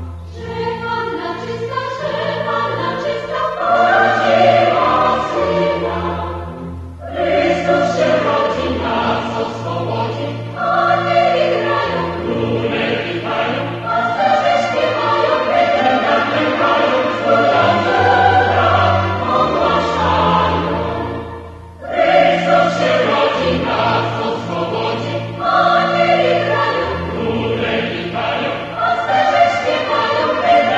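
Choral music: a choir singing slow, sustained phrases over held low notes, with short breaks between phrases.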